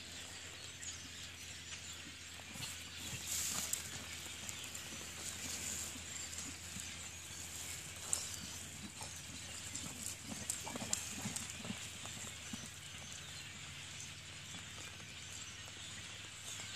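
Faint hoofbeats of a horse loping on soft plowed dirt, heard from a distance with scattered light clicks over a quiet outdoor background.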